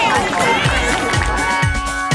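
Players and spectators cheering and shouting after a goal, giving way about a second in to background music with a steady low beat about twice a second and held chords.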